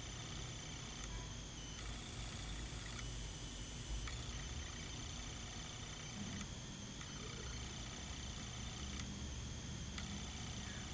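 Faint steady background hiss with a low hum: room tone, with no distinct sound event.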